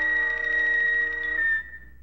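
Opening theme music: a held chord of several steady tones that cuts off about one and a half seconds in, leaving a single high note briefly ringing on.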